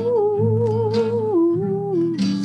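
Music: a voice humming a slow melody with vibrato, holding a note that steps down about one and a half seconds in, over a guitar accompaniment.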